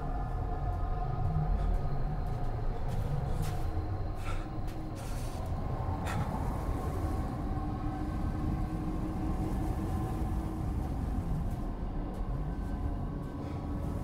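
Film soundtrack: a steady low rumble under sustained held tones of the score, with a few brief rushes of noise about four to six seconds in.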